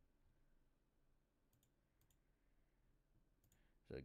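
Three faint computer mouse clicks, each a quick double tick (button press and release), about a second and a half, two seconds and three and a half seconds in, with near silence between them.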